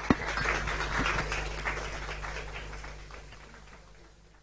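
An audience applauding, the clapping fading away steadily toward the end, with one sharp knock near the start.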